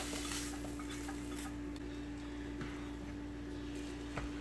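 Sausage slices scraped off a spatula into a skillet of scrambled eggs and stirred in: a few soft scattered clicks and scrapes of the spatula against the pan, over a faint sizzle that fades in the first half second.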